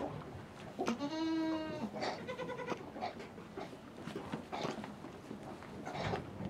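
Miniature goats bleating: one long, steady bleat about a second in, then a shorter, higher, quavering bleat just after it.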